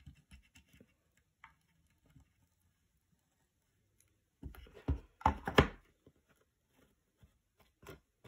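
Faint handling clicks, then a short cluster of louder knocks and rubbing about halfway through as a wooden box frame is turned over and set down on a cutting mat, and one more light knock near the end.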